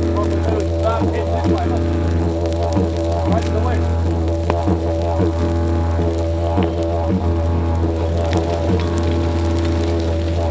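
Didgeridoo music: a steady low drone, with overtones that sweep up and down over it in a repeating pattern.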